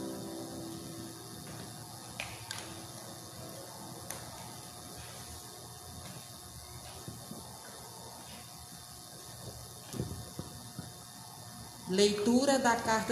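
Faint room hiss with a few soft clicks and knocks from people moving about and handling things at a lectern, and a louder knock about ten seconds in.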